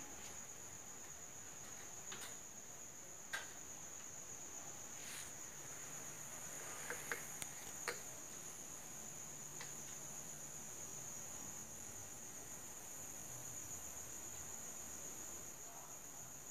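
Faint steady high-pitched whine, with a few light clicks a few seconds in and again about halfway.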